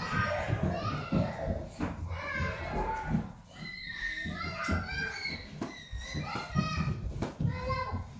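Children's voices chattering and calling out in a room, with a few light knocks.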